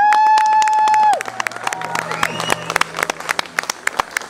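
A loud, high, held note lasting about a second, then audience clapping and cheering.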